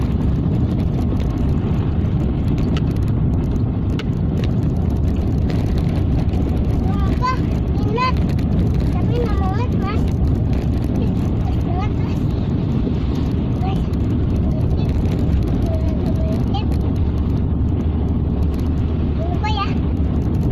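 Car driving along a rough, narrow paved road, heard from inside the cabin: a steady, loud low rumble of engine and tyre noise. A few brief voice-like sounds rise over it in the middle and near the end.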